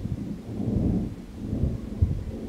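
Thunder from a heavy thunderstorm, a low rolling rumble that swells about half a second in and eases off toward the end.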